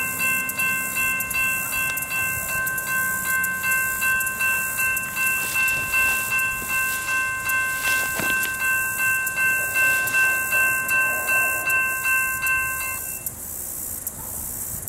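Railroad grade-crossing bell ringing steadily, a little over two strokes a second, warning of an approaching train; it cuts off abruptly about 13 seconds in.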